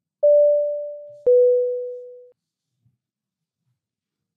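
Two-note electronic chime, a higher tone then a lower one about a second later, each struck sharply and fading away.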